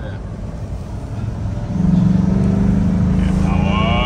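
Land Rover Defender 110's V8 engine running, heard from inside the cab over low road rumble. About two seconds in, the engine note grows louder into a strong, steady drone.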